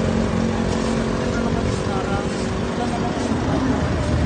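A vehicle engine idling, a steady low hum, with street traffic noise around it.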